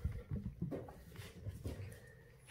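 Havanese puppies moving about on a hard floor: irregular soft knocks and pattering of small paws.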